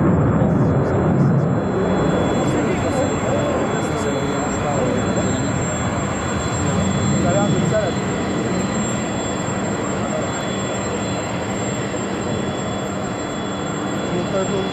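JF-17 Thunder fighter's Klimov RD-93 turbofan in flight during a flying display: a steady roar that eases off a little over the last few seconds.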